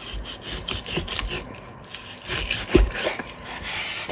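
A chef's knife slicing lean pork on a wooden cutting board: a series of short back-and-forth sawing strokes, the blade scraping on the board, with a louder knock of the blade on the board about three-quarters of the way through.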